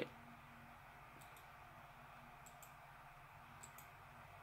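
Near silence with faint clicking from the laptop's controls as a device list is worked through: three quick double clicks, about a second in, about halfway and near the end.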